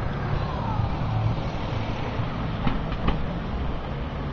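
Steady low rumble of outdoor background noise, with a couple of light clicks about three seconds in.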